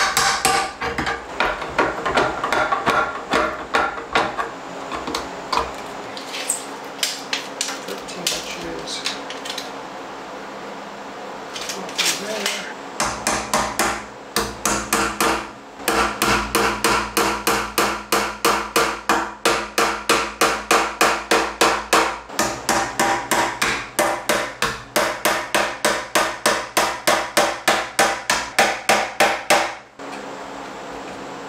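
Hammer striking wood framing, with scattered irregular knocks at first, then a long steady run of blows about three a second through the second half.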